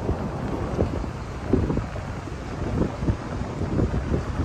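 Wind buffeting the microphone of a handheld camera: a gusty, low rumble that rises and falls unevenly.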